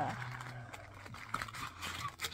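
A cardboard McDonald's box being opened and its paper-wrapped toy handled: soft paper rustling and a few light taps.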